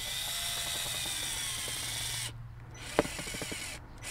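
Cordless drill driving a long ground screw through a plastic charging-station base plate into the ground. The motor runs steadily for about two seconds, stops briefly, then runs again with a sharp click and a quick string of clicks near the end.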